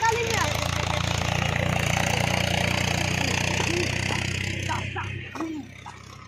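A steady low engine drone with a hiss over it, dropping away about five seconds in, with a few short calls from voices near the end.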